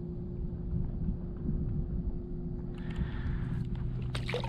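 Wind rumbling on the microphone, with a faint steady hum underneath and a brief hiss a little before the end.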